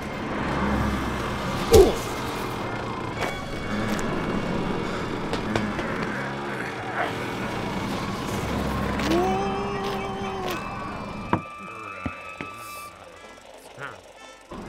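Added foley over film music: a steady city street traffic bed with scattered clicks and knocks. About two seconds in comes a sharp, loud effect whose pitch falls quickly. Later a held horn-like tone sounds for about a second and a half. Near the end the street noise drops away to a much quieter room sound.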